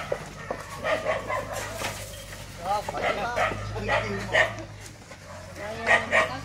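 A dog barking and yipping in short calls, with a few sharp knocks, the loudest near the end.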